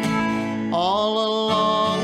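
Folk band playing an instrumental passage between verses, led by acoustic guitar. A melody note slides up in pitch and is held, starting a little under a second in.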